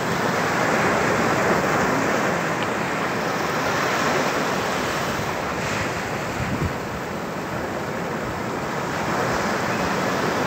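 Small waves breaking and washing up a sandy beach: a steady rush of surf that swells louder in the first couple of seconds, eases off after the middle and builds again near the end.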